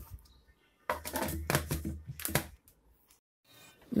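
A quick run of plastic clicks and knocks from a blender jar and its lid being handled, lasting about a second and a half.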